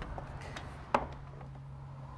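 A single sharp knock about a second in as a spirit level is set against the wooden door jamb, with a couple of faint taps before it. A low steady hum runs underneath.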